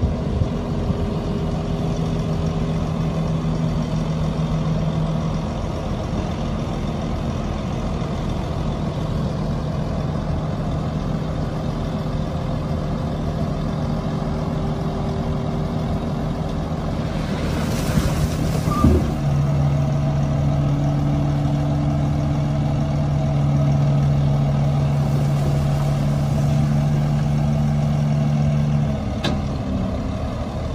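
Heavy diesel truck engines running steadily. Just past halfway comes a short hiss of released air and a knock, after which an engine holds a louder, steady note while a dump truck raises its tipper bed.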